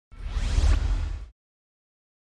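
A whoosh sound effect with a deep low rumble under a rising sweep, lasting about a second and cutting off sharply, then silence.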